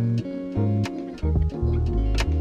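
A hip-hop beat built from a chopped sample plays, with a moving bass line under pitched sample notes and short sharp percussion hits.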